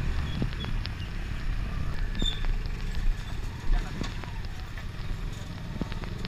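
Dirt bike ridden slowly over a gravel track, heard from the handlebars: a low, steady engine and road rumble with scattered knocks and clicks from bumps in the surface.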